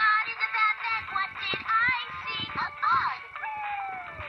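LeapFrog Tag reading pen playing a short song with singing and music through its small built-in speaker, ending with a falling tone.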